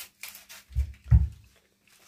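Two short, dull low thumps about a third of a second apart, the second louder, after a few faint clicks and rustles.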